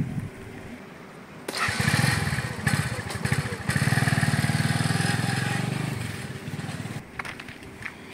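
A motor vehicle's engine running close by. It comes in suddenly about a second and a half in, stays loud for several seconds, then fades away near the end.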